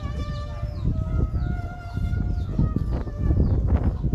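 A rooster crowing, one long drawn-out call lasting about two and a half seconds, over a steady rumble of wind on the microphone and crowd noise.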